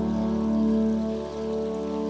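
Steady rain falling, under background music of sustained, held chords.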